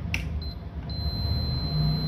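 Multimeter continuity beeper giving a steady high beep, starting about a second in after a short click of the probe and a brief blip, with a low hum underneath. The probes bridge a pole of an unpowered contactor, so the beep means the contacts are stuck closed: the contactor is faulty.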